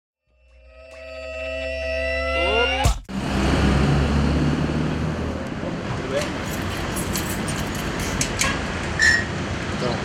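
A sustained musical tone with overtones swells up over about three seconds, its pitches bending upward at the end, and cuts off with a sharp click. It gives way to steady street noise with traffic and scattered small clicks.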